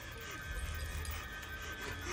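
Dark, droning horror-film score with a low rumble and a thin sustained high tone, under faint pained groans from a man straining against the chains hooked into his skin.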